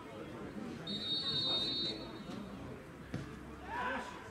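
A referee's whistle is blown once, a steady high blast about a second long, signalling that the free kick may be taken. About two seconds later there is a single sharp thud as the football is kicked, with voices talking in the background.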